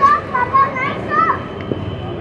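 A young child's voice, several short high-pitched calls in the first second and a half, over steady background noise.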